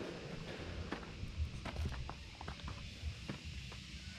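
Footsteps, with scattered small clicks and soft knocks as a person moves about on a rocky summit.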